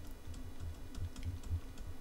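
Faint, irregular light clicks and taps of a stylus on a pen tablet, several a second, as handwriting is written stroke by stroke.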